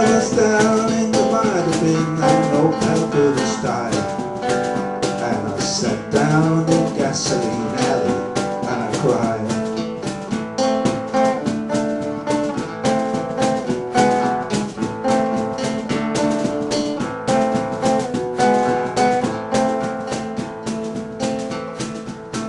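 Acoustic guitar strummed in a steady rhythm: an instrumental break in a country-style song, with no sung words.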